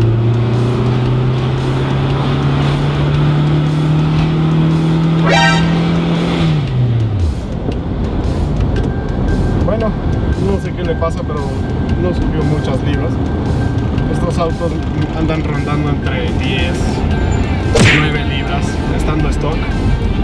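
A 2.2-litre turbocharged four-cylinder car engine pulling under acceleration, heard from inside the cabin. Its note rises steadily for about six seconds, then falls away quickly. A brief sharp sound comes near the end.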